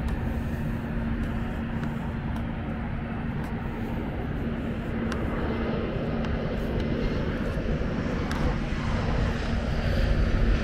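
Jet airliner engine noise over steady outdoor traffic rumble, swelling over the second half. A steady low hum runs under it.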